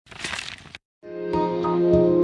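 A short crackling noise lasting under a second, then a brief silence, then soft keyboard background music fading in.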